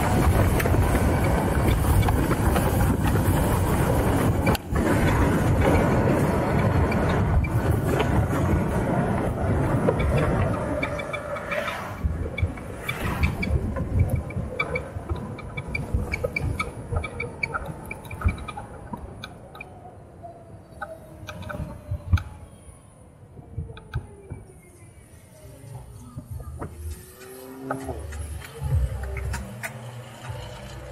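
Wind rushing past the microphone while an electric motorcycle rides at speed. About ten seconds in it eases off as the bike slows toward a stop, leaving a faint motor whine that falls in pitch, plus traffic around it.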